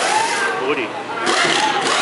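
Impact wrench rattling on lug nuts during a race-car tire change, starting a little past halfway, over shouting and chatter from the crowd and crew.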